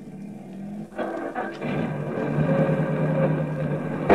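Radio-drama sound effect of a car engine running, growing louder about a second in as the parked car pulls away, then holding a steady drone.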